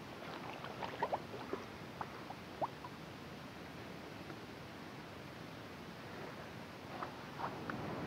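Faint sloshing and rustling of shallow lake water as a common carp is let go from a wet carp sling at the water's edge.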